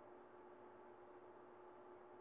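Near silence, with only a faint steady hum and hiss.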